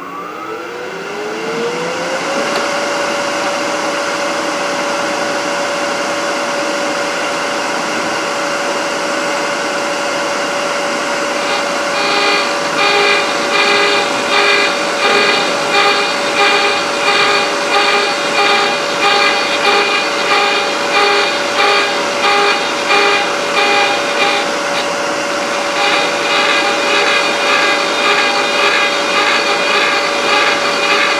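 A threading jig's high-speed cutter motor spins up with a rising whine, then runs at a steady pitch. From about twelve seconds in, the cutter cuts a thread into the workpiece as it is turned by hand, with a rhythmic scraping about once a second that pauses briefly and then resumes.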